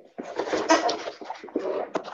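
Sheets of paper rustling and crackling as a file of papers is leafed through and handled.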